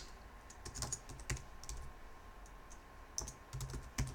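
Faint keystrokes on a computer keyboard as a short word is typed: scattered light key clicks, bunched near the start and again near the end.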